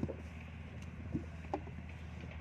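Wet clay being smoothed and pressed by hand into a wooden brick mould, with two soft dull knocks a little past halfway, over a steady low rumble.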